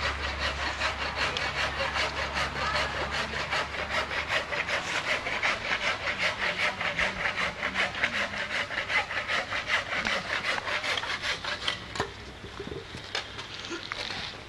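A steady, rhythmic rasping, about four strokes a second, stops about twelve seconds in. A low hum runs underneath for the first few seconds.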